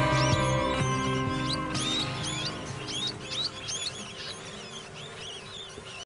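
Music fading out under a rapid string of high-pitched rat squeaks. The squeaks stand out more as the music dies away over the last few seconds.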